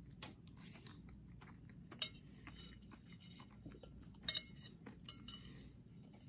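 Quiet eating: a mouthful of ice cream cake being chewed, with a few faint clicks and clinks of a spoon and plate, including a quick double click about four seconds in.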